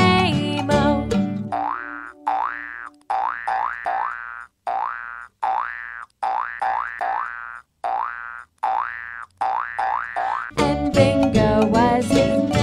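Cartoon 'boing' sound effects, each a short springy rising glide, repeated in quick groups with brief silent gaps between them. Backing music stops about a second in and comes back near the end.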